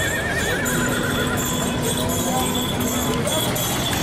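A horse whinnying, one wavering call of about a second and a half, over the steady babble of a fairground crowd. A low steady tone sounds through the middle.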